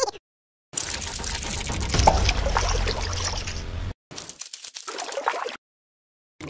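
Edited water sound effects in hard-cut pieces. A short pitched sound cuts off at the very start. Then comes about three seconds of pouring, sloshing water, and after a brief gap a shorter crackly, splashy patch.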